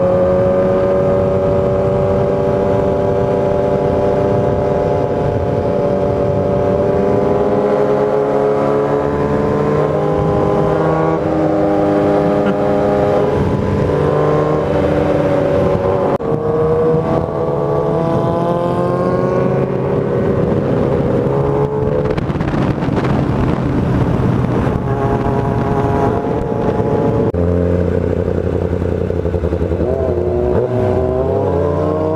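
Sport motorcycle's inline-four engine running under way, its pitch climbing slowly and dropping back several times as the rider works the throttle and gears.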